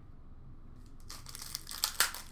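Foil wrapper of a trading-card pack crinkling as it is handled, starting about a second in and getting louder toward the end.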